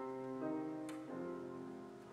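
Grand piano playing slow, held chords that change twice, with a brief click just under a second in.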